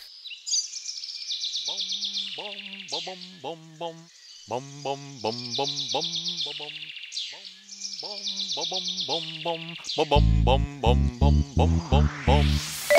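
Birds chirping and trilling steadily in a cartoon soundtrack. Over them, childlike voices sing 'bom-bom, bom-bom, bom, bom-bom' three times in short notes. Near the end, a song's backing music comes in loudly with a heavy bass beat.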